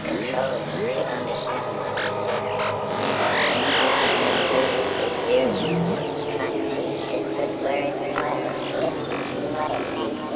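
Psychedelic trance music in its intro: sustained synth pads under swirling electronic effects that glide up and down in pitch, with no steady beat.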